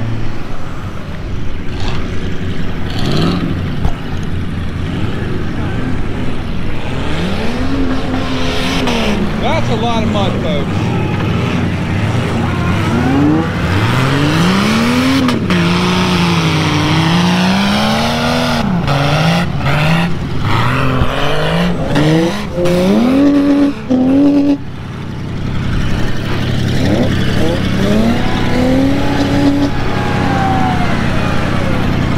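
Mud-bog truck engine revving hard, its pitch swinging up and down again and again as it is driven through the mud pit. The sound cuts out briefly several times in the second half.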